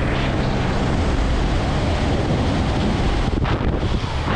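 Loud, steady rush of air buffeting a camera microphone worn in wingsuit flight.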